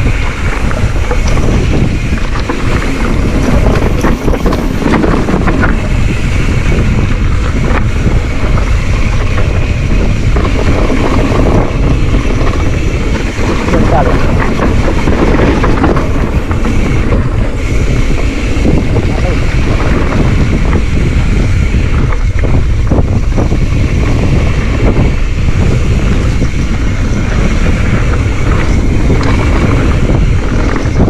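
Wind buffeting an action camera's microphone during a fast mountain-bike descent on a dirt trail, mixed with the steady rumble and rapid clattering of the bike and tyres over rough ground.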